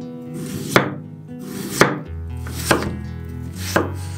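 Chef's knife slicing through a peeled raw potato onto a wooden cutting board, four cuts about a second apart. Each cut is a short crunch through the potato ending in a sharp knock of the blade on the board. Soft guitar music plays underneath.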